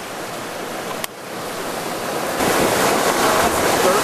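Rough sea rushing and splashing past the hull of a J-boat sailing yacht driving through waves, with wind. The rush swells louder about two and a half seconds in.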